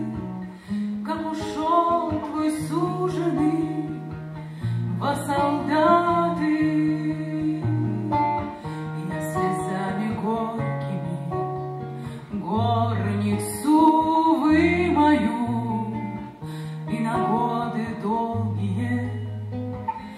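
A woman sings a Russian bard song in a sustained voice with vibrato, accompanied by an acoustic guitar playing a moving bass line under the chords.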